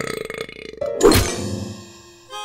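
A cartoon character's rough, croaking burp-like vocal noise, cut off about a second in by a sudden falling swoosh. Short musical notes follow and fade away.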